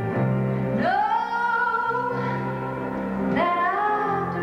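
A woman singing a slow gospel song live with keyboard accompaniment, holding long notes that slide up into pitch, one about a second in and another near the end.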